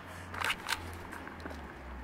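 Handling noise from a handheld camera as it is swung down, with two short scuffs a fraction of a second apart over a steady low rumble.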